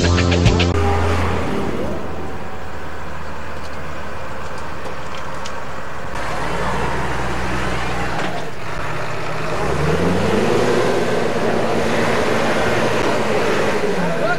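News intro music ends just after the start. It gives way to a Case IH tractor's diesel engine running, which rises in pitch about ten seconds in as it revs up, then holds the higher speed.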